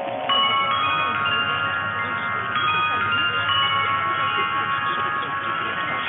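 Chime-like music from a Danish longwave AM broadcast on 243 kHz, with sustained bell-like tones ringing on. New clusters of notes are struck about a third of a second in and again about two and a half seconds in. The sound is narrow AM radio audio with nothing above about 4 kHz.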